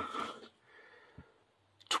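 A pause in a man's speech: his voice trails off, then near silence with one faint tick, and a short sharp breath just before he speaks again.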